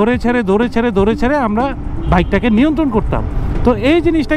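A man speaking continuously over the steady low rumble of a moving motorcycle, with its engine and wind noise underneath.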